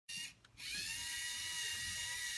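LEGO Mindstorms robot's small electric motors and plastic gears running with a steady high-pitched whine. The whine rises as it starts, about half a second in, after a short sound and a brief pause.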